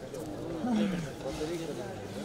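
Spectators and coaches shouting and cheering after a scoring judo throw, many voices overlapping. One loud, drawn-out shout falls in pitch a little over half a second in.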